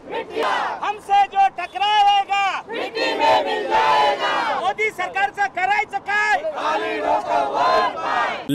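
A crowd of men and women shouting political slogans together in short, repeated chanted phrases. The group voices thicken into a dense mass of overlapping shouts around three to four seconds in.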